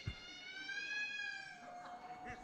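A man's high-pitched mock-crying wail, drawn out as one long held note that tails off to a thin steady tone, fainter than his speech. A soft low thump comes right at the start.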